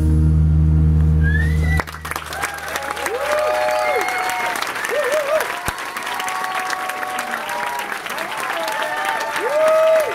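A band's final chord, acoustic guitar over a low bass note, rings and then stops about two seconds in, and the audience breaks into applause with whoops and cheers.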